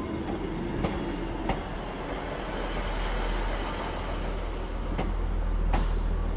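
ScotRail Class 158 diesel multiple unit passing close by, its diesel engine running with a steady low rumble. Its wheels click sharply over rail joints a few times, and there is a brief high-pitched squeal near the end.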